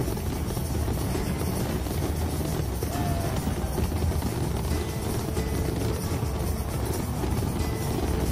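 Large fireworks barrage, many shells bursting at once so that they merge into a steady, dense low rumble with no single bang standing out.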